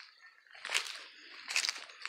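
Two footsteps crunching on dry leaves and grass, about a second apart.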